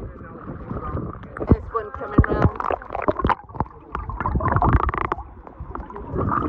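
Shallow sea water sloshing and splashing against a waterproof camera held at the surface, with irregular sharp splashes and indistinct voices; near the end the camera goes under and the sound turns dull and muffled.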